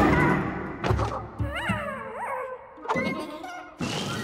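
Cartoon sound effects of two animated ants tumbling and scuffling: several thuds and knocks, with two short squeaky sounds that rise and fall in pitch in the middle, and a sudden loud hit just before the end.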